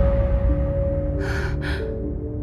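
A young woman gasping for breath twice in quick succession, a little over a second in, as she wakes with a start, over sustained soundtrack music.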